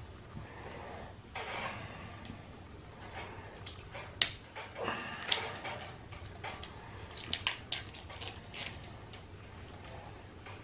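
Fingers working the plastic seal and cap of a small energy-shot bottle: soft crinkling of the wrapper, then a run of sharp little clicks and snaps, the loudest about four seconds in and several more in the second half.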